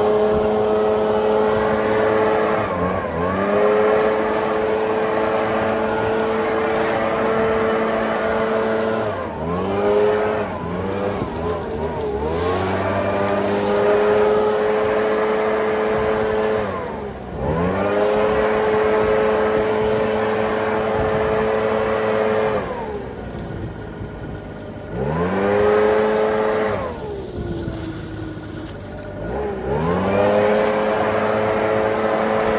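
Leaf blower running at high speed, its pitch dropping and climbing back about six times as the throttle is let off and opened again while it blows leaves.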